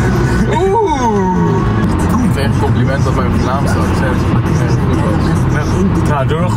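Two men's voices singing along inside a moving car, with the car's steady low engine and road rumble underneath.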